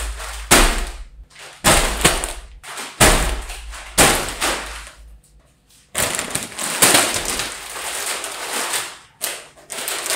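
Sealed plastic snack bags crinkling as they are dropped one after another onto a table. Several separate crackles each fade within about half a second, and some land with a low thud.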